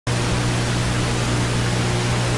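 Analogue television static: an even, steady hiss over a low hum.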